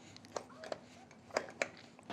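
A few faint clicks and small knocks from hands working a Fox DPX2 air rear shock on a mountain bike: the air can being slid back down over the shock body after a volume reducer was fitted.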